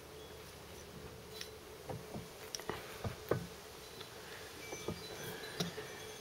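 Faint light metallic knocks, a handful between about two and three and a half seconds in, over a low steady hum: the crankshaft of a 1929 Lister A type engine being lifted and rocked in its main bearing to check for play, which is only a very small amount.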